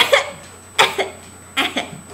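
A person coughing three short times, about a second apart.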